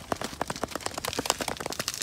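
Snow packed inside a plastic Nalgene water bottle crunching and crackling as the bottle is handled, a quick irregular run of small clicks.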